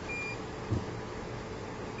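Low-end UPS's alarm beeper giving short high beeps, one just after the start and another about two seconds later, the warning that it is running on battery. A faint steady hum and a soft thump sit underneath.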